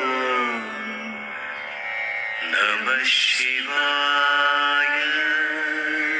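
Devotional Hindu mantra chant set to music: a voice holds long sung notes that waver slightly, with a brief hiss about three seconds in.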